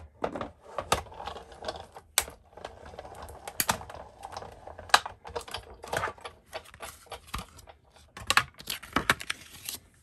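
Sizzix die-cutting machine in use: the plastic cutting plates clack and tap as they are loaded, cranked through the rollers and taken out again, in a run of irregular sharp clicks.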